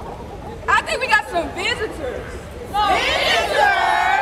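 Group of women's voices calling out over crowd chatter, with short calls about a second in and a louder burst of many overlapping high voices in the last second or so.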